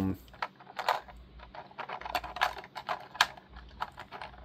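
Small plastic action-figure face sculpts and parts clicking and tapping as they are handled and swapped by hand. The light, irregular clicks come a few a second, with a sharper click a little after three seconds in.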